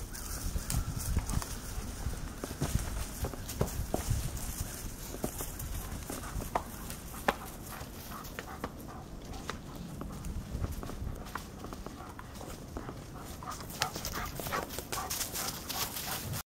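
A Rocky Mountain Horse's hooves stepping onto and across a large boulder: irregular knocks and clops of hoof on rock, spread through the whole stretch.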